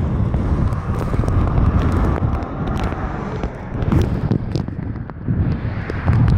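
Wind rumbling on the microphone of a moving bicycle, mixed with passing road traffic.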